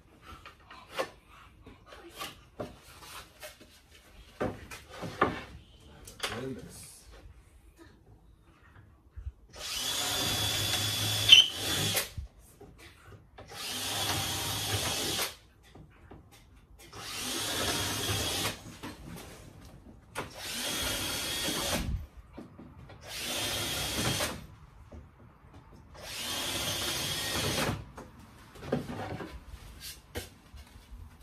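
Power drill running in six bursts of about two seconds each, boring into plywood, after several seconds of light knocks and taps as the wood is handled.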